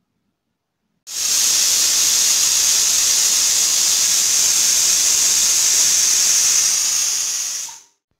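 Aluminium pressure cooker venting steam: a loud, steady hiss that starts abruptly about a second in and fades out just before the end.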